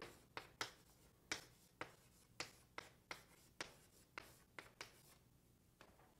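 Faint handwriting: about a dozen short, quick writing strokes scratching across the surface, stopping about five seconds in.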